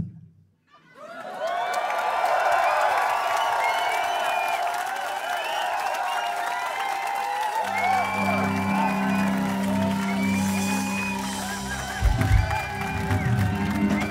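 Concert audience cheering, whooping and shouting between songs. About eight seconds in, the band comes in with a low sustained chord, and low thumps join near the end.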